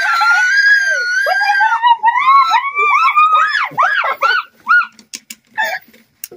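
A young girl screaming, one long high-pitched scream held for about two seconds, followed by a rapid string of short squealing cries, in fright at the grasshopper she is trying to grab.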